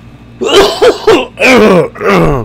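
A man with a nasty head cold coughing, a loud fit of about four coughs starting about half a second in.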